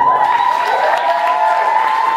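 Live audience applauding and cheering, many hands clapping with high, held cheers over the clapping.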